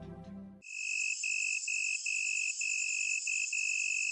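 Tonal music ends abruptly just over half a second in, giving way to a high, insect-like chirring: a steady high buzz with a shrill tone pulsing about three times a second.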